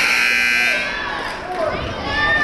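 Gymnasium scoreboard horn sounding one steady, loud blast of about a second that starts abruptly, then background voices. It marks a substitution at a dead ball.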